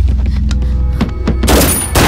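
Action-film soundtrack: a low, droning background score with a few sharp knocks in the first second and a loud bang about one and a half seconds in.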